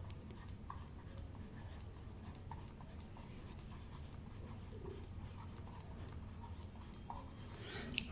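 Faint scratching and light ticks of a stylus writing on a tablet, over a steady low hum.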